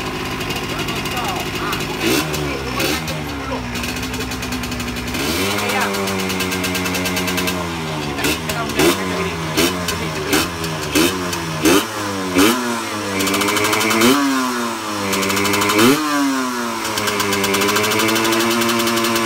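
Motorcycle engine being revved in repeated throttle blips, its pitch climbing and dropping back about once a second, starting a couple of seconds in.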